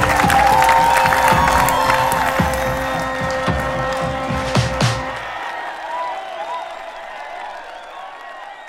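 Music with guests clapping and cheering under it, fading out steadily. The bass drops away about five seconds in, leaving a faint higher tail of the music.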